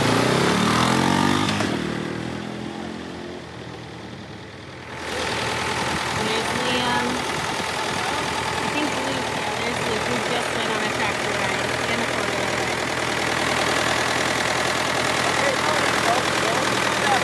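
A four-wheeler's engine revs with rising pitch in the first seconds, then fades away. About five seconds in, a Farmall 504 diesel tractor engine takes over, idling steadily, with children's voices over it.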